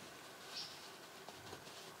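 Faint squeak and rubbing of a tire-plug insertion tool being forced into the rubber tread of a tire, with a short high squeak about half a second in. The plug is resisting going into the angled hole.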